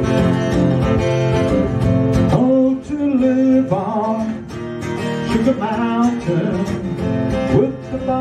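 Acoustic guitar strummed in a steady rhythm. About two and a half seconds in, a man's voice starts singing over it.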